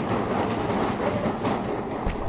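Audience applauding in a hall.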